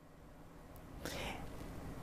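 A man's faint in-breath during a pause in his talk, growing a little louder about a second in before he speaks again.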